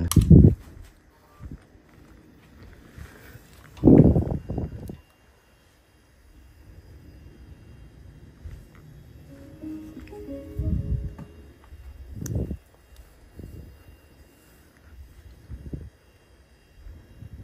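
Knocks at the start and again about four seconds in, then a short electronic start-up tune of a few held notes about ten seconds in, as the equipment powers up.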